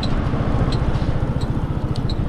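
Motorcycle running at riding speed, its engine and wind rumble on the microphone making a steady low drone.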